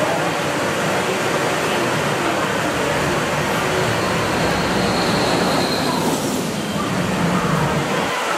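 Intamin Impulse roller coaster train running along its launch track: a steady rushing of the train, with a high whine that stops suddenly about six seconds in.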